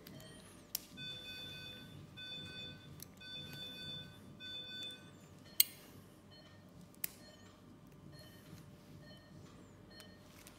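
Electronic medical equipment alarm beeping in an operating theatre: a repeating multi-tone beep about one and a half times a second, fainter after about five seconds. A few sharp clicks cut in, the loudest about halfway through.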